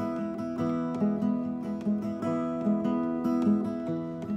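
Acoustic guitar strummed in a steady rhythm, a chord stroke roughly every half second, with no voice over it.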